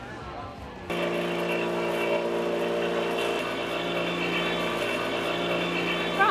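Electric floor sander's motor running at a steady hum, starting abruptly about a second in.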